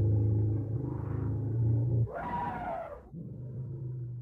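A deep, low-pitched roaring voice held for about two seconds, then a brighter, higher cry that falls in pitch, then the low roar again, quieter.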